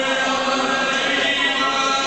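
Long held, chant-like pitched voice sound with music, over an arena public-address system.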